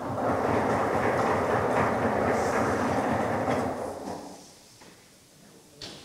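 Audience applause, which fades away about four seconds in.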